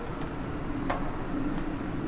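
Steady low background rumble with one sharp click a little under a second in.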